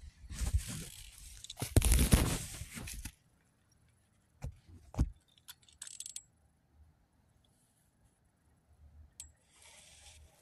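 Loud rustling and scraping for about three seconds, strongest about two seconds in. After that it goes nearly quiet, with a few sharp clicks and knocks between about four and six seconds in.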